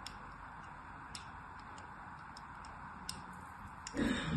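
Thin blade scoring lines into a bar of soap: a handful of crisp little ticks at irregular intervals over a steady faint hiss.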